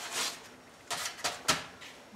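Crumpled brown paper crackling and rustling as a large sheet is picked up and handled, with a few sharp clicks and a knock about a second in.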